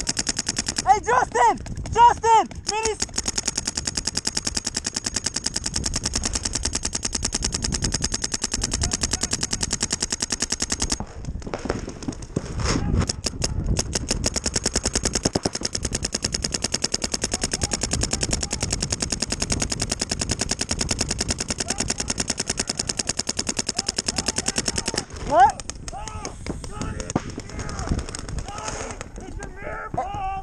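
Paintball markers firing in long rapid strings, many shots a second, like a machine gun, with a short break about 11 seconds in and thinning out near the end. Brief shouts cut in near the start and again about 25 seconds in.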